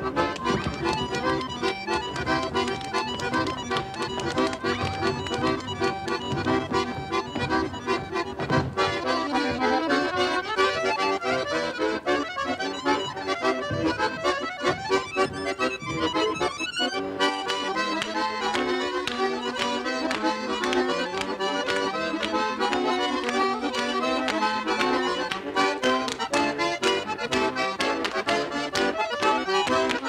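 Accordion music for a Russian folk dance, with a brisk, steady beat. The low accompaniment drops away about halfway through, leaving the higher melody.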